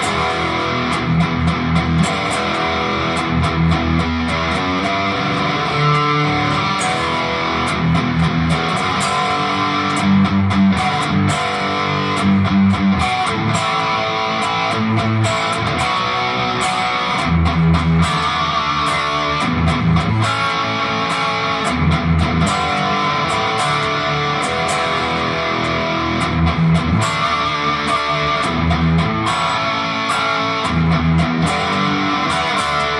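Distorted electric guitar, an ESP, playing a hard-rock rhythm part unaccompanied: short picked notes alternating with held low chords, steady and loud.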